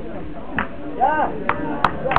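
A thrown steel petanque boule striking another boule with sharp metallic clacks near the end: a shot knocking a boule away from the jack.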